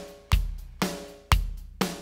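EZDrummer 2 virtual drum kit playing back a programmed beat: a drum hit about every half second, with a deep bass-drum hit about once a second.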